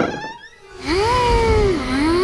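A cartoon character's voice making two long, drawn-out calls, each rising and then falling in pitch. The calls begin about a second in, after a near-silent moment, over a low rumble.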